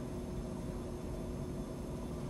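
Steady room tone: a low, even hiss with a faint steady hum and no distinct events.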